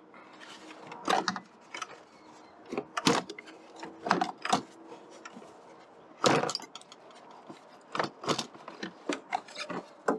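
Plastic air intake duct of a Ford C-Max being worked loose by hand: irregular knocks, clicks and rubbing of plastic parts, loudest a little after six seconds in.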